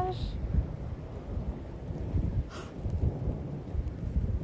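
Thundersnow: thunder rumbling low and long during a snowstorm.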